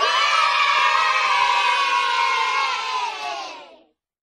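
A group of children cheering together in one drawn-out shout that sets in at once, holds, and fades away near the end.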